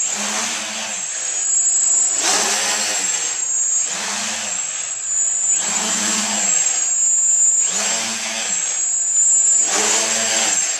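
Home-built quadcopter's KDA 20-22L brushless motors spinning 10x6 propellers, the buzz rising and falling in pitch about every two seconds as it hovers low and bobs up and down, over a steady high whine.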